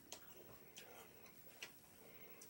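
Near silence from the tape's blank lead-in, broken by three faint, sharp clicks a little under a second apart.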